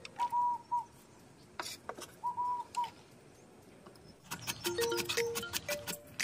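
A kitchen knife chopping a carrot on a wooden cutting board, in rapid sharp taps starting about four seconds in, over light background music. Before it, a quiet stretch with a few short whistle-like notes.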